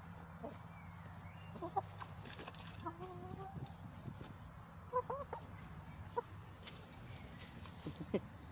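Chickens clucking close by: short, scattered calls, about one every second or so, with a few sharp clicks among them.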